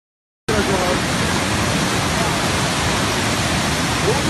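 Torrent of muddy floodwater rushing past, a loud, steady rush of water that starts about half a second in, with faint voices under it.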